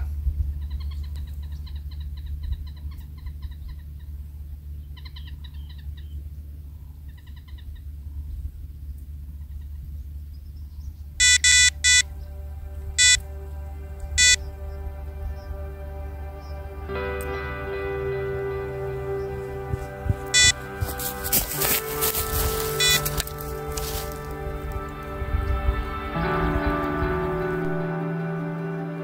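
Carp bite alarm on a rod rest giving four short, sharp beeps within about three seconds, the signal of a fish taking line. Before that, birds chirp over a steady low hum; from a little past halfway, soft background music plays.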